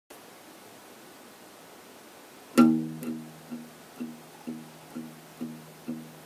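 Acoustic guitar intro: faint hiss, then a loud chord struck about two and a half seconds in, followed by picked notes repeating about twice a second over a held low note.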